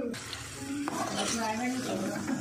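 Metal spatula stirring and scraping masala and paneer in a kadai, with one sharp knock against the pan a little under a second in.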